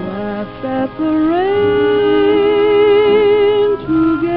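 Orchestral dance-band music on an old radio recording with the top end cut off. About a second in, a melody line slides up and holds a long note with vibrato, then breaks off near the end.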